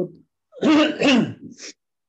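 A man clearing his throat once, a voiced sound of about a second followed by a short breathy hiss.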